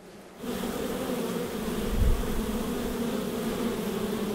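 A mass of honey bees buzzing steadily, a low droning hum of many wings, starting suddenly about half a second in. A brief low thump comes about two seconds in.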